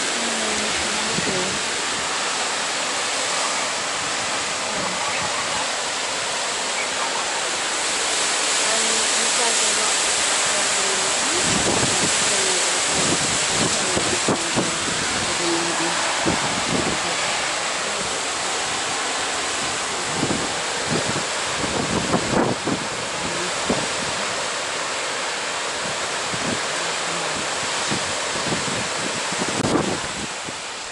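Staubbach Falls' water and spray coming down close by in a loud, steady rush. Gusts of wind buffet the microphone at times, most in the middle of the stretch.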